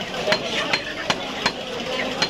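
Large butcher's knife chopping chicken on a wooden log chopping block: five quick, evenly spaced chops, about one every 0.4 seconds.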